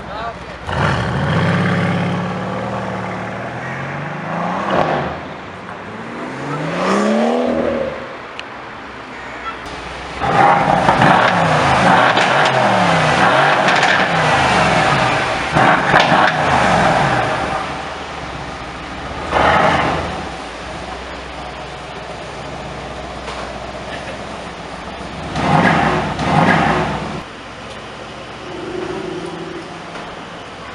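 Mercedes-AMG C63 S Estate's twin-turbo V8 being revved: several short blips that rise sharply in pitch, one long loud rev held from about ten to seventeen seconds, and two more short blips later, falling back to idle in between.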